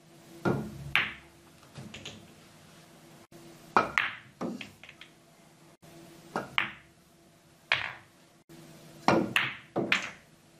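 Pool balls clicking during play: the cue tip striking the cue ball, balls colliding and knocking against cushions and into pockets, heard as a series of sharp clicks and knocks, some in quick pairs. A low steady hum runs underneath.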